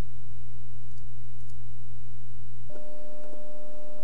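Sustained electronic background-music tones: one steady low note that changes about three seconds in to a held chord of several higher notes.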